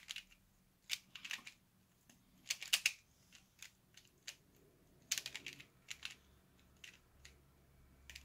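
Plastic Pyraminx puzzle being turned quickly by hand: sharp clicking clacks of its pieces, a few turns at a time in short bursts with brief pauses between.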